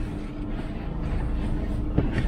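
A car engine idles with a steady hum while a person climbs into the driver's seat through the open door. A light click comes right at the start and another near the end.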